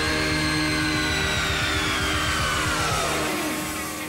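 Rock and roll recording: a long high wail slides slowly down in pitch for about three seconds over a fast, pounding low beat, which drops out near the end.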